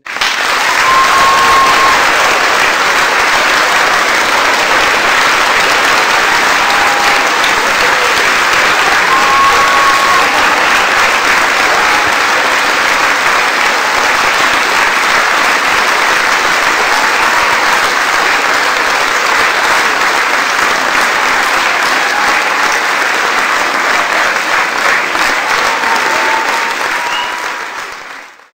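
A large audience applauding, a dense steady clapping that starts suddenly and dies away near the end.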